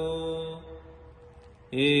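A male voice chanting Pali pirith in a slow, drawn-out tone: the held final syllable of 'akāliko' fades away over the first second or so, and the chant returns loudly with 'ehipassiko' just before the end.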